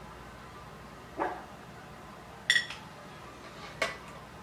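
A dog giving three short barks, the middle one the loudest.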